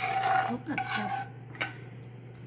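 A metal spoon scraping and clinking against a pan while scooping wet enchilada filling and spreading it over tortillas in a glass baking dish. A sharp clink at the start, a second or so of scraping and sloppy noise, then another short clink about a second and a half in.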